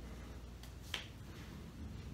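A single sharp snap about a second in, just after a fainter click, made by a fast arm movement in a Wing Chun form, over a low room hum.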